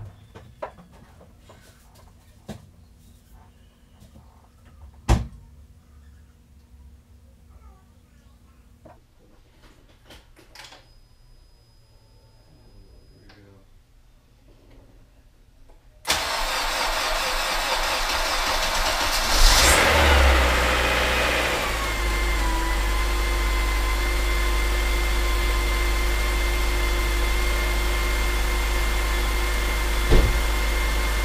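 Acura TSX's four-cylinder engine being started for the first time after a head gasket replacement and top-end rebuild. For the first half there are only small clicks and one sharp knock. Just past halfway it cranks, catches a few seconds later with a brief rev that falls away, then settles into a steady idle.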